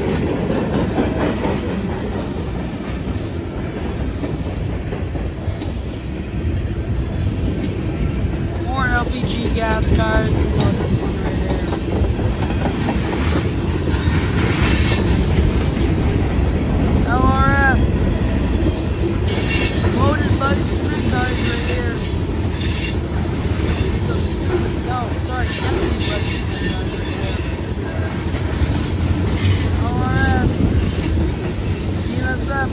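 Loaded and empty freight cars of a long freight train rolling past close by: a steady rumble of steel wheels on rail, with brief squeals from the wheels now and then.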